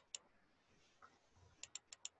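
Near silence broken by a few faint, sharp computer clicks: two right at the start, then three in quick succession near the end.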